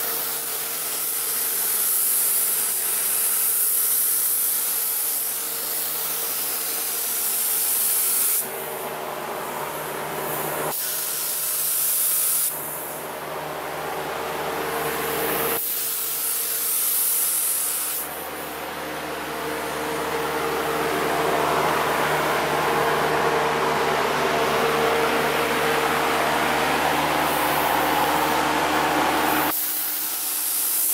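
Compressed-air paint spray gun hissing steadily as it sprays, with a steady hum underneath; the hiss cuts off and restarts abruptly several times.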